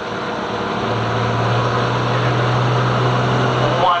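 Single-turbo Caterpillar diesel in a modified semi pulling truck running at the start line. Its note steps up a little about a second in and then holds steady while the sound slowly grows louder.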